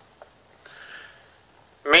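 A brief, soft intake of breath by the reciter in the pause between chanted lines of scripture, then his chanting voice starts again near the end.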